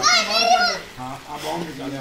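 A child's high-pitched voice calling out in the first second, followed by quieter talk from others at the pool.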